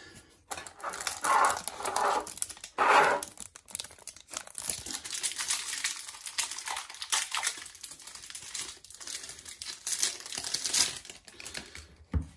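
Plastic wrapper of a baseball card pack crinkling and tearing as the pack is opened by hand, an irregular crackle throughout, loudest in the first few seconds.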